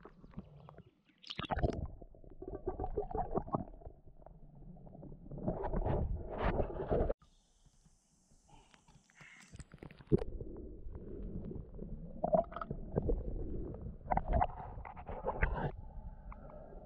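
Water sloshing and gurgling around a camera held at the surface of a creek, dipping in and out of the water. The sound comes in irregular surges, with a quieter spell of a few seconds about seven seconds in.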